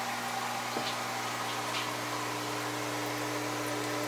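Steady electric hum with a low buzz and a light hiss from a running aquarium-style air pump that aerates deep-water-culture hydroponic reservoirs.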